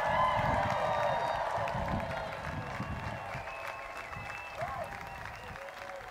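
Large crowd applauding and cheering after a congratulation, with held cheering tones over the clapping. It swells at the start, then slowly dies down.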